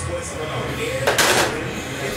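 A brief scrape or rustle of something handled, about half a second long, a little past halfway.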